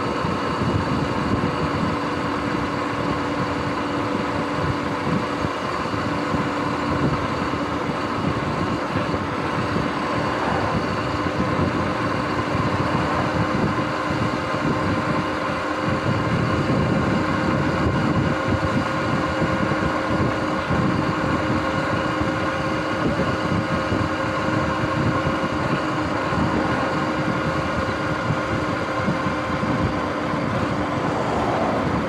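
Sur-Ron X electric dirt bike's motor and drivetrain whining steadily at a constant cruising speed, with wind rumbling heavily on the microphone.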